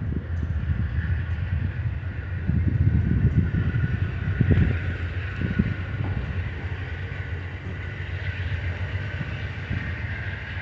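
Amtrak Superliner bilevel passenger cars rolling past close by: a steady rumble of steel wheels on the rails with a thin high whine above it. The rumble is loudest from about two and a half to five seconds in.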